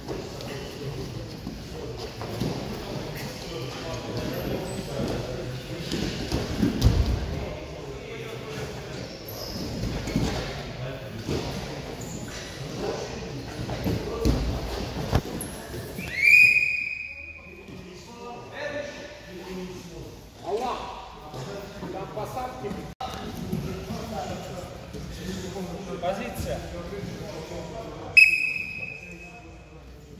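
Wrestlers grappling on a padded mat in a large, echoing hall: dull thuds and shuffling of bodies on the mat, with voices. Two short, high-pitched signal blasts sound, one about halfway through and one near the end.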